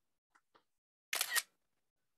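iPad screenshot shutter sound: one brief camera-shutter click about a second in, as the screen is captured.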